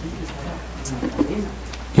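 A bird cooing softly, two short groups of low calls over a steady low hum.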